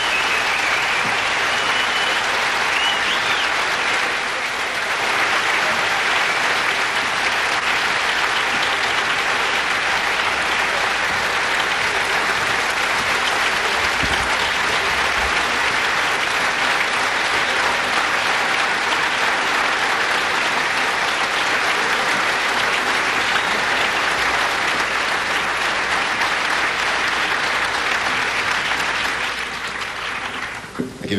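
Concert audience applauding steadily for about half a minute, dying away at the very end.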